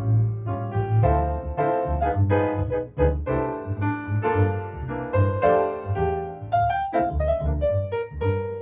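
Jazz duo of grand piano and upright double bass: the piano plays a melody with chords while the bass plucks low notes underneath.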